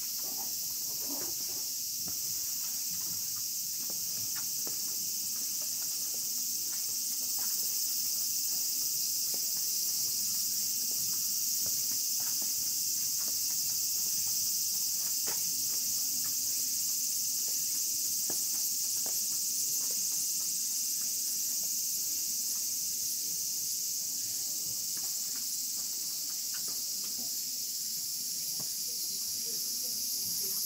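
A dense chorus of insects in the trees, a steady high-pitched drone that runs without a break, with faint footsteps on the stone path underneath.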